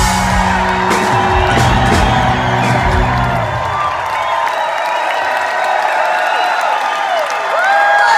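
Live rock band holding low sustained notes to the end of a song, cutting off about four seconds in, while an arena crowd cheers and whoops.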